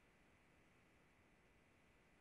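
Near silence: a faint, steady background hiss with a thin steady tone in it.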